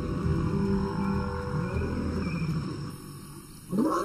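Male lion roaring low, the call fading out after about three seconds.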